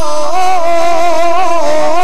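Devotional singing: one voice drawing out long notes that waver and bend slowly in pitch, with no pause for breath.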